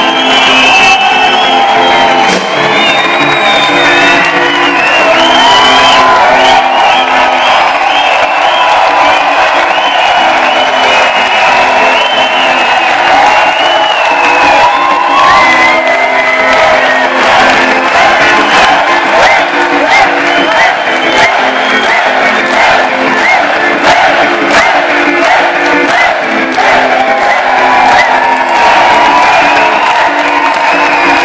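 Loud live band music with electric guitar and drums, and a crowd cheering and whooping over it.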